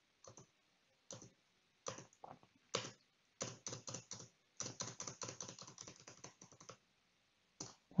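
Faint computer keyboard keystrokes: a few scattered taps, then a quick run of typing in the middle, and one last tap near the end.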